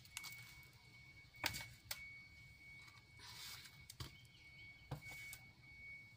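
Faint handling sounds of fresh fish being moved between containers: a few light knocks and a brief rustle. A faint steady high whine runs underneath.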